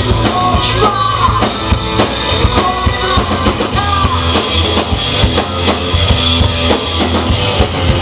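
Live rock band playing loud, with a driving drum kit and bass guitar under a female lead vocal sung into a microphone.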